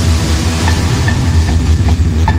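Loud hardstyle electronic dance music played live on drum machines and synthesizers: a dense, distorted bass line with the treble filtered away.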